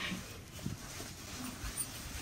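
Faint rustling of a hoodie being pulled on, with a few soft knocks.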